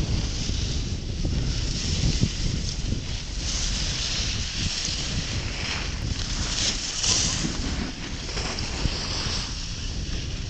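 Wind buffeting the microphone: a steady low rumble with a hiss on top that swells a few times.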